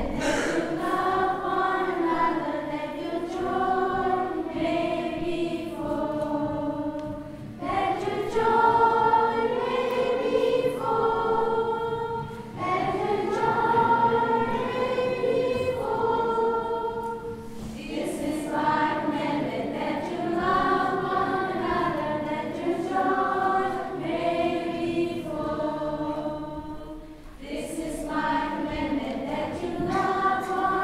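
Children's choir singing together, in phrases broken by brief pauses.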